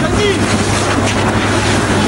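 Steady rushing of a police water cannon's jet spraying into a crowd, with crowd voices underneath.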